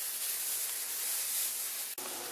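Diced beef sizzling as it fries in oil in a skillet: a steady hiss.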